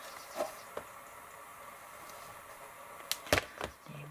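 Quiet handling of craft materials with a couple of faint clicks, then two sharp knocks a little after three seconds in as a plastic glue bottle is set down on a cutting mat.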